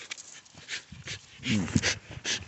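A pit bull gives a short, pitched vocal sound, the loudest thing, about one and a half seconds in. Around it are scuffs and rustles of movement in the grass.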